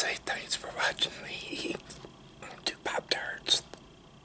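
A man whispering close to the microphone, broken by sharp mouth clicks.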